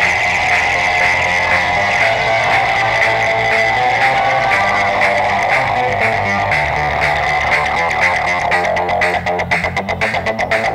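Modular synthesizer playing live electronic music: a repeating pulsing sequence over sustained low bass notes. Near the end the sound turns into a fast stuttering run of short pulses.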